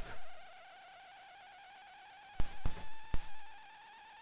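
A faint, steady whine with a slight waver, slowly rising in pitch, with a few sharp clicks and knocks from about two and a half to three seconds in.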